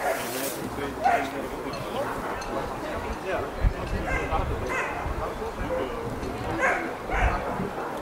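Dogs barking now and then over people's voices talking in the background.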